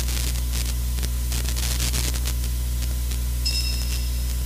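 Steady low electrical hum with static hiss on the recording. A high ringing tone with several pitches begins near the end.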